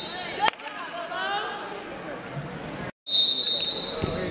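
A referee's whistle blows one long, high, steady blast that stops about half a second in, as a sharp smack sounds. Shouted coaching and hall voices follow. After an abrupt cut a second long whistle blast starts near the end.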